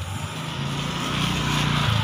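A motor vehicle's engine running steadily with a low hum, slowly growing louder.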